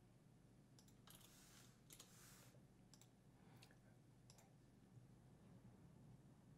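Near silence with a few faint, scattered clicks of a computer mouse and keyboard.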